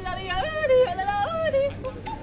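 A person yodeling in a high voice that flips abruptly back and forth between lower and higher notes several times.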